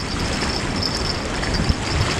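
Wind buffeting the microphone, a steady rushing noise with uneven low rumble, over choppy lake water.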